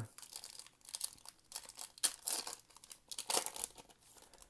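Foil trading-card pack wrapper crinkling in the hands in several short, irregular bursts, with cardboard cards sliding against each other.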